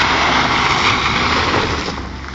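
Ford Fiesta sliding past close by on a gravel dirt track: loud engine with a dense hiss of tyres and loose gravel, easing off near the end as the car pulls away.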